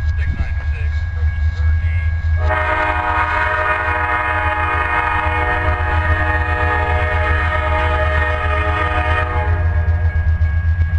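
Locomotive multi-chime air horn sounding one long, steady blast of about seven seconds, starting about two and a half seconds in and cutting off sharply, over a low steady rumble from the approaching train.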